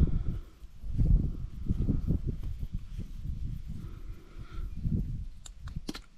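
Irregular low rubbing and knocking of a leak-down tester's rubber hose being handled and twisted as its fitting is screwed into the engine's spark plug hole, with a couple of sharp clicks near the end.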